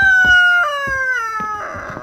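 A rooster crowing: one long, loud crow that falls in pitch in steps and ends about a second and a half in.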